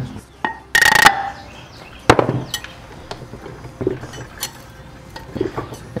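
Metal-on-metal clinks and knocks from a differential carrier and shim being worked into the diff housing: a loud ringing clink about a second in, a sharp knock about two seconds in, then light scattered ticks.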